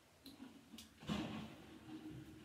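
Faint snips of hair-cutting scissors, two quick clicks in the first second, then a louder short rustle of hair being handled about a second in.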